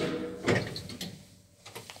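A KONE elevator's sliding door mechanism clattering as the car halts. It starts suddenly with a second loud clack about half a second in, then dies away.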